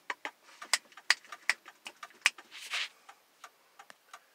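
Light, sharp ticking at a fairly regular pace of about two to three ticks a second, with a short rustle near the middle.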